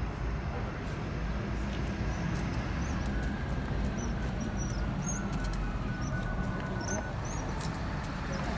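Outdoor street ambience: a steady low rumble, with faint, short high-pitched chirps in the middle.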